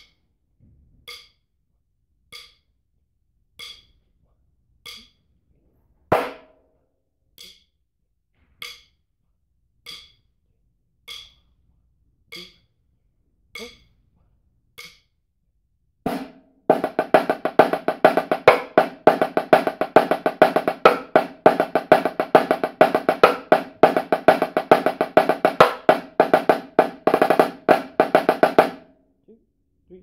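A steady single tick about every second and a quarter, with one louder stroke about six seconds in. About sixteen seconds in, a high-tension marching snare drum comes in with fast, dense strokes and rolls, then stops shortly before the end.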